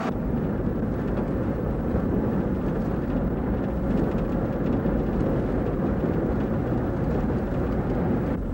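Steady road and engine noise inside the cabin of a moving Buick station wagon.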